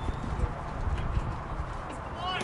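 Outdoor ballpark ambience: a low rumble with a few faint knocks, and no voices.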